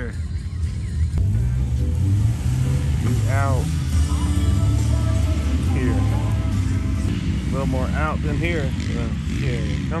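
A vehicle engine runs with a low rumble that climbs in pitch about a second in and eases back down after a few seconds, under background music and scattered distant shouts.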